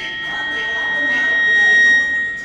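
A song playing over a hall's PA speakers, with a steady high tone swelling louder across the two seconds and breaking off at the end.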